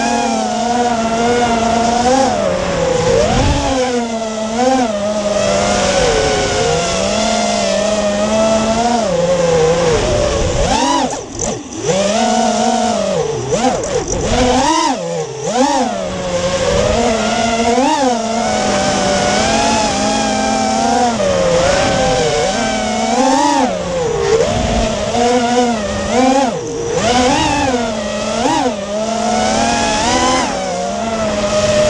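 Whine of a 210-size FPV racing quad's four T-Motor F40 V2 2300KV brushless motors and Dal Cyclone propellers, heard from the onboard camera. The pitch keeps swooping up and down with the throttle and drops away briefly about eleven seconds in.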